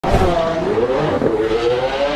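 Loud sound effect for a logo intro: a noisy rush with several wavering, sliding pitches, cutting in abruptly at the start.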